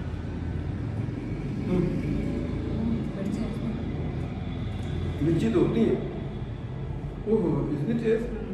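A few brief murmured voice sounds from people at the table, over a steady low rumble.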